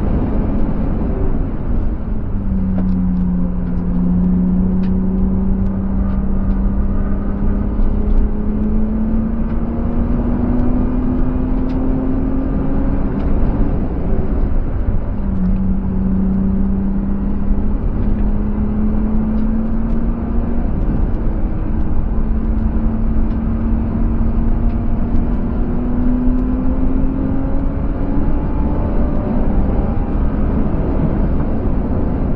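BMW E36 coupe's M50B25TU 2.5-litre straight-six pulling hard, heard from inside the cabin, its revs climbing steadily. About halfway through the revs drop sharply with an upshift, then climb again. Steady tyre, road and wind rumble runs underneath.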